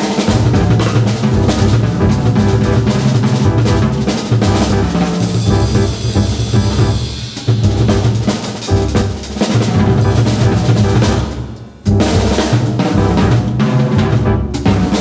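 Jazz drum kit played busily (snare, bass drum and cymbals) over a plucked upright double bass. About eleven seconds in, the playing briefly drops back, then comes in again with a sharp hit.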